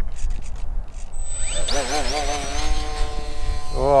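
Electric RC plane's CF-2812 1400KV brushless motor and 8x6 propeller spinning up about one and a half seconds in, a fast rising whine that settles into a steady high-pitched drone at take-off power. Wind rumbles on the microphone throughout.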